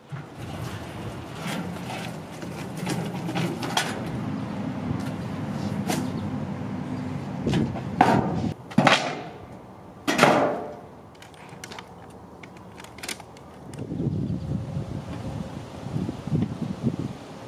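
A wheelbarrow being pushed, its wheel rumbling over concrete and asphalt with scattered rattles and knocks, and two louder swells of noise about two seconds apart in the middle.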